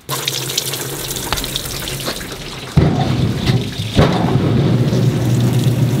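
Tub-style poultry plucker being test-run: water sprays and splashes into its stainless-steel drum, then about three seconds in a loud steady motor hum joins the spray as the drum spins.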